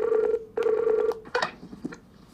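Skype outgoing call ringing on a laptop: two steady rings of about half a second each with a short gap, then a brief blip.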